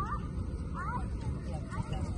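Distant children's shouts and squeals over a steady low rumble.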